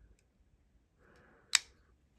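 A single sharp click about one and a half seconds in, just after a faint soft rub, as fingers handle an open folding knife at its liner lock.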